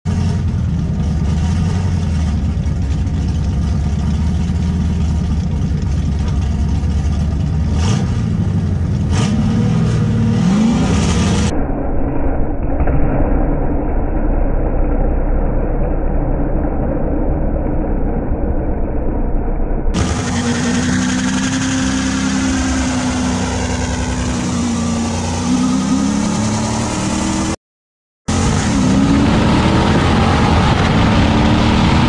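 A 1966 Pontiac GTO's 389 V8 at a drag strip, revving and launching hard, its pitch rising as it pulls away, in several cut-together runs. One stretch sounds muffled, and the sound drops out briefly near the end.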